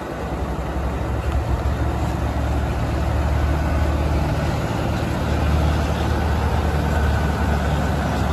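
Caterpillar C15 diesel engine of a Western Star semi-truck idling steadily, a low, even rumble that grows louder over the first few seconds and then holds.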